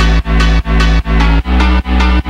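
Phonk music: a heavy bass line that drops out briefly about two and a half times a second, giving a pumping rhythm under bright, busy electronic layers.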